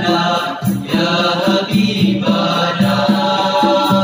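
A group of boys singing an Islamic devotional song (nasyid) together in harmony into microphones through a PA, with a low part pulsing about twice a second.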